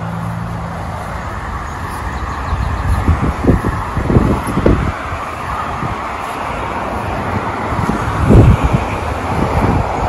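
Steady rushing outdoor background noise, with a few dull low thumps about three to five seconds in and a stronger one at about eight seconds.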